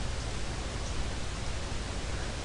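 Steady hiss of background noise in a pause between spoken sentences, with no other distinct sound.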